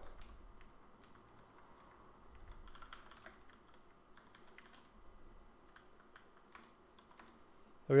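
Computer keyboard being typed on: faint, irregular key clicks in short runs.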